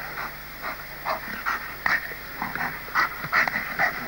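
A dog giving a quick, uneven run of about a dozen short, high-pitched yelps.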